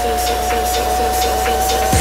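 Big room house breakdown: the kick drum has dropped out, leaving a sustained high synth note that creeps slightly upward in pitch over a steady bass drone and faint ticking percussion. The kick drum comes back in right at the end.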